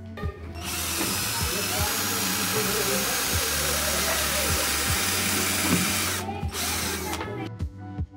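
Cordless drill running steadily with its bit against a 3D-printed plastic base for about six seconds, then stopping, over background music.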